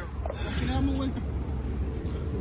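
Crickets chirping steadily at a high pitch, over a low background rumble.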